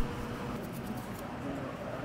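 Faint soft crackle of gloved fingers sprinkling a pinch of cinnamon sugar over cookies on a plate, under a steady kitchen background hum.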